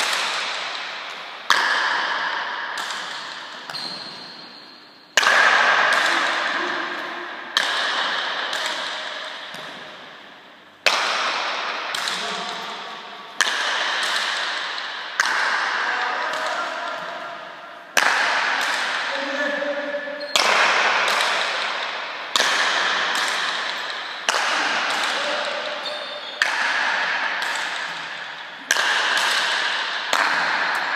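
Leather pelota struck with wooden paletas and smacking off the fronton walls during a long rally, a sharp crack every one to three seconds, each ringing out in a long echo through the indoor hall.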